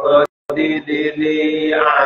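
A man's voice chanting into a microphone in long, held notes, with a brief silent gap a moment after the start.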